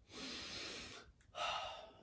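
A man's audible breaths between sentences: a longer breath in the first second, then a shorter one about a second and a half in.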